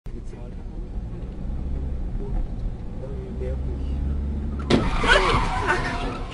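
Low rumble of a car's engine and road noise heard from inside the car, then about three-quarters of the way through a sudden loud car crash: a collision impact followed by crunching and scraping of metal and breaking glass.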